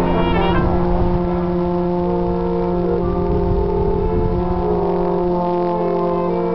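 Brass instruments, trumpet among them, holding long sustained notes together as a chord, the pitches shifting every second or so, with a low rumble underneath.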